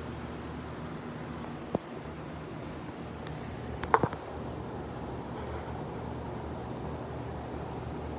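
Handling noise of a phone camera being moved and set down: a sharp click a little before two seconds in and a couple of knocks around four seconds, over a steady low room hum.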